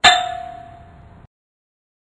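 Logo-sting sound effect: one sharp metallic clang with a single ringing tone that fades and cuts off suddenly a little over a second in.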